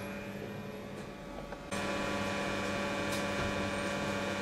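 A steady hum of several held tones over a background hiss. It is quieter at first, then steps up abruptly nearly two seconds in and stays level.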